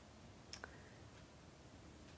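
Near silence: room tone, with two faint clicks close together just over half a second in.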